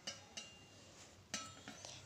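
A few light clinks of stainless steel utensils being handled and set against one another, some with a brief metallic ring.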